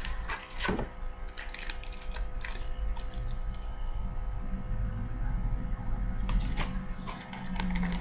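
Small clear plastic bag crinkling and crackling as it is handled and opened, in scattered irregular clicks, over a steady low hum.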